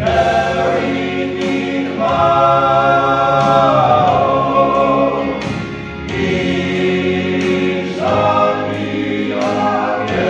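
Male gospel quartet, four men's voices singing together in harmony through a PA, holding long chords with a brief dip about six seconds in.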